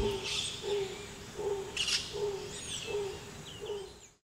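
Birds calling: one short low note repeated about every three-quarters of a second, with higher chirps and whistles over it, fading out at the end.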